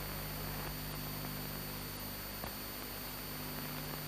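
Steady background hiss with a low hum and a thin high whine, the noise floor of an old film soundtrack, with one faint click about two and a half seconds in.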